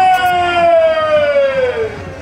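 One long drawn-out vocal cry, held for about two seconds and sliding steadily down in pitch before breaking off near the end.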